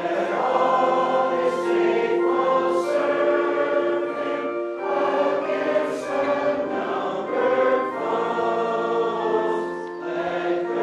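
A congregation singing a hymn together, many voices holding each note, with a short break between lines about five seconds in.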